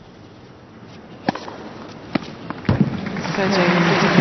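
Tennis ball struck by racquets three times, sharp cracks coming less than a second apart in a short rally that opens with a serve, followed by crowd applause rising near the end.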